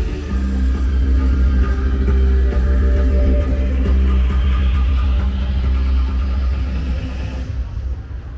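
Loud music with a heavy, steady bass, fading near the end.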